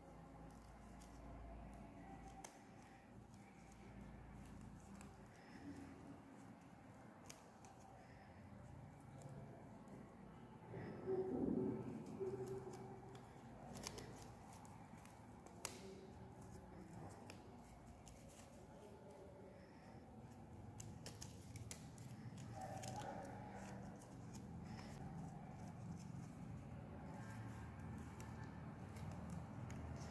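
Faint rustling and light crackling of a folded, cut sheet of thin paper being unfolded by hand. A short, louder sound comes about eleven seconds in.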